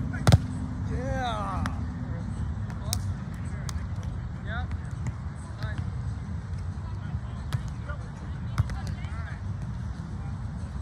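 A volleyball struck sharply by a hand in a jump hit about a third of a second in, the loudest sound, followed by a few fainter ball contacts from play, with brief voices over a steady low rumble.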